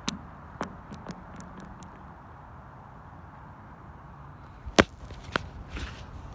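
Stones striking and skittering on clear lake ice, making sharp ringing clicks: a quick run in the first two seconds, then the loudest one about five seconds in, followed by two more.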